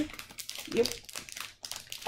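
Crinkling and rustling of a small plastic toy wrapper as it is handled and opened.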